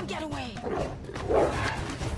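Spotted hyenas yipping and whooping in short calls that slide in pitch, the film's hyena pack closing in for the attack.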